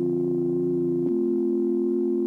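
Electronic music: a held synthesizer chord that changes to a new chord about a second in.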